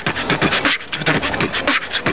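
Live human beatboxing into a cupped hand: a fast, unbroken run of mouth-made drum hits with a few short low notes mixed in.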